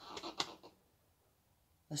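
A few faint, short clicks in the first half second, small parts being handled in a car's engine bay, then near silence.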